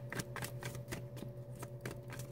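A deck of tarot cards being shuffled by hand: an irregular run of light card clicks and flicks.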